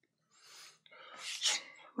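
A person's breathy sounds into a close microphone: a faint breath, then a louder one that builds to a peak about one and a half seconds in and fades.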